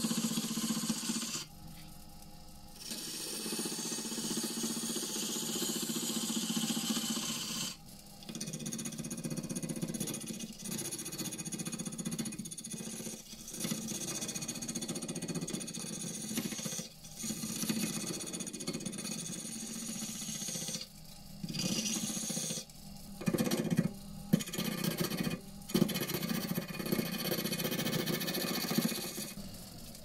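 Wood lathe spinning a pussy willow blank while a gouge cuts it, a steady cutting noise broken by short pauses as the tool comes off the wood, stopping just before the end.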